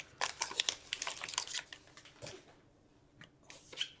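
Foil trading-card pack wrapper crinkling and tearing in the hands: a dense crackle for about the first second and a half, then a few light ticks of cards being handled.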